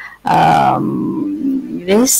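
A person's voice holding one drawn-out vowel for about a second and a half, its pitch slowly falling, like a hesitation sound in talk.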